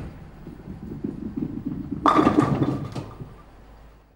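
Bowling ball rolling down a lane with a low rumble, then hitting the pins about two seconds in, a loud clatter that fades away near the end.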